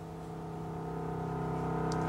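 Soft background score: a held chord that slowly grows louder.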